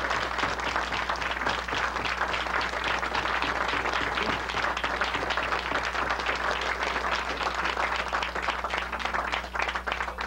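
Small audience applauding, many hands clapping in a dense, steady patter that thins out near the end.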